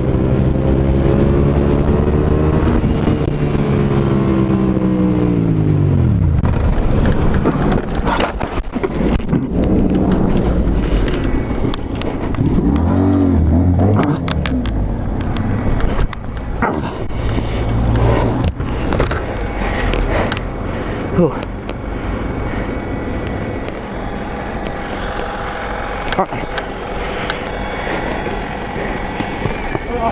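Suzuki SV650S V-twin engine winding down under hard braking, its pitch falling over the first six seconds, then a run of knocks, clatter and scraping from about eight to sixteen seconds in as the motorcycle goes down and slides into the kerb.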